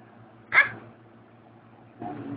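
A single short, high-pitched squeal from a baby, falling in pitch, about half a second in.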